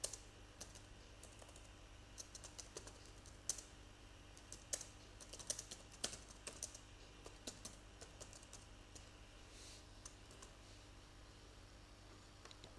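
Computer keyboard keys clicking irregularly as a short sentence is typed, in quick runs that thin out over the last few seconds, over a faint low steady hum.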